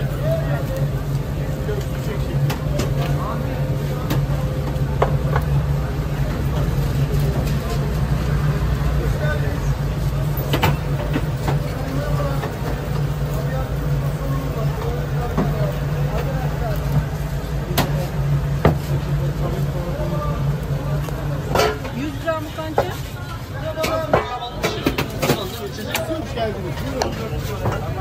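A steady low mechanical hum under indistinct background voices, with occasional sharp knocks. The hum stops a little over 20 seconds in, and the knocks come more often near the end.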